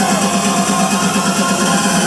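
Loud electronic dance music from a DJ set over a club sound system, a repeating beat under sustained synth melody lines. Heard through a phone's microphone, so the deep bass is largely missing.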